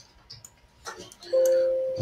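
A few faint clicks, then about a second in a sudden steady chime-like tone that holds at one pitch for under a second and slowly fades.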